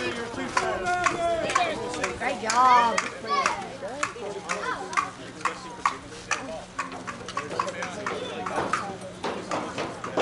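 Several people's voices calling and chattering across a softball field, loudest in the first three seconds and thinning out after. Scattered sharp clicks and a steady low hum run underneath.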